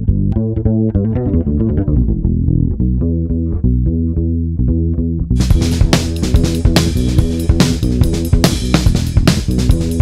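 Direct-input electric bass guitar with its chorus effect printed, playing a melodic fusion line on its own. About halfway through, a fuller and brighter part of the recording with sharp hits joins it.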